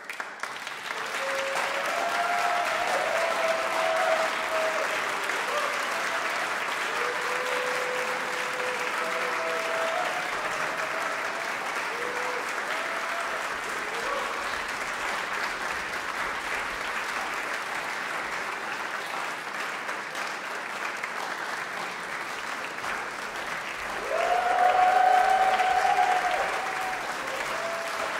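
Audience applauding steadily after a performance, with voices calling out now and then and a louder cheer a little before the end.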